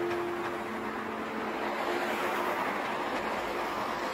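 A piano note dies away at the start, then the steady noise of city street traffic, cars passing on the road, swelling slightly around the middle.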